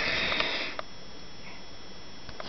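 A short breathy hiss of a breath close to the microphone, lasting under a second, followed by quiet room tone.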